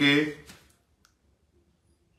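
A man's voice trailing off in the first half-second, then near silence with one faint click about a second in.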